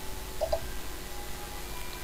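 A pause with only a low steady electrical hum and room tone over a voice call, and one faint brief sound about half a second in.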